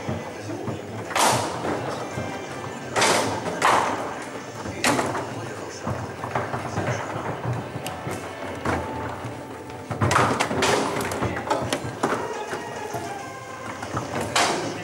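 Foosball table in play: the ball and the rod-mounted figures knock sharply several times, some in quick pairs. Background music and voices run underneath.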